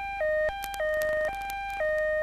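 An electronic two-note tone switching back and forth between a lower and a higher note about every half second, in a hi-lo alarm-like pattern, with a few faint clicks.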